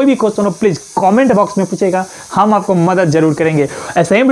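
A man speaking Hindi, with a steady hiss in the background.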